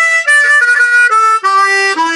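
Harmonica playing a short phrase of held notes that step up and down in pitch, settling on a longer, lower note near the end.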